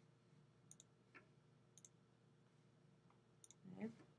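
A few faint computer mouse clicks in near silence.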